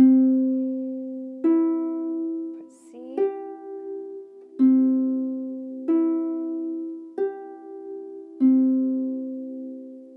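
Pedal harp strings plucked one at a time in a slow C major triad exercise, C–E–G upward and again, seven notes in all about one and a third seconds apart. Each note is left to ring and fade under the next.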